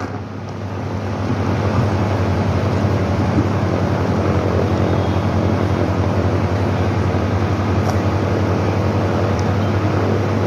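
A steady low machine-like hum over an even rushing noise, building up over the first second or so and then holding level.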